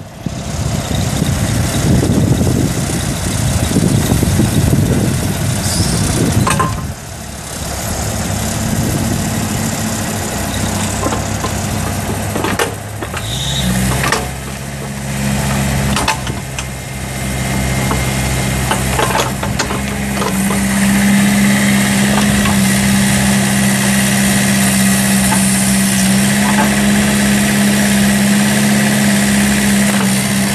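1997 Bobcat X331 compact excavator's Kubota four-cylinder diesel running while the machine swings and tracks. The engine speed steps up about halfway through and then holds a steady note, with a few knocks along the way.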